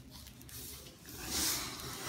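Cardboard shipping-box flaps rubbing and scraping as the box is opened: a dry rasp that swells about a second in and fades again.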